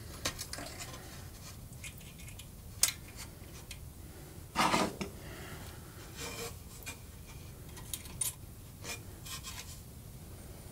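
Small clicks and rubbing from heater wires and a soldering iron being handled against the tube-socket pins of a metal amplifier chassis, with one louder half-second scrape about halfway through.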